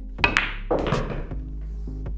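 Pool cue tip striking the cue ball, then a sharp click of the cue ball hitting the object ball within a fraction of a second, followed by rolling and knocking as balls travel and the object ball drops into the pocket. Background music plays throughout.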